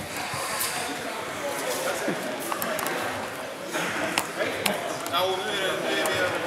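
Indistinct chatter of several people in a reverberant sports hall, with a few short, sharp clicks scattered through it and one voice standing out near the end.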